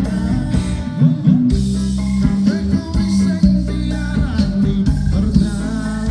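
Live band music: guitars and drum kit playing a pop song, with a singer's voice over them.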